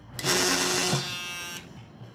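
A brief whirring, motor-like noise with a steady hum under it, lasting about a second and a half; it is louder for the first second, then fades and stops.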